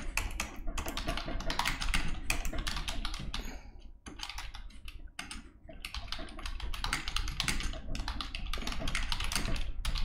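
Typing on a computer keyboard: rapid runs of key clicks, broken by two short pauses about four and five seconds in.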